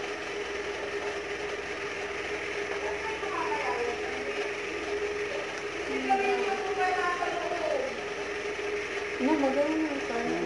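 A steady mid-pitched hum over a soft hiss, with faint voices talking in the background.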